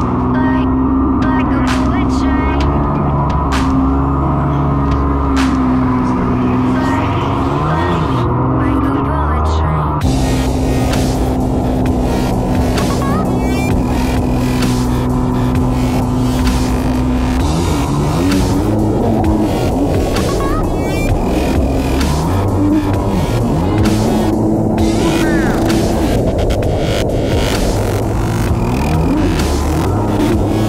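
Background electronic music with a steady, throbbing beat.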